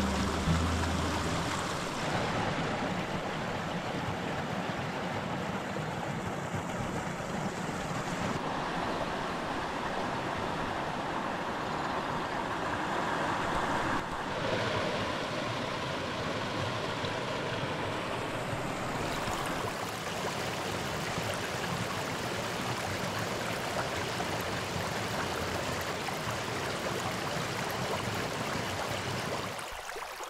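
A mountain stream running over rocks: a steady rush of water, its sound shifting abruptly a few times. The end of background music fades out in the first second or two.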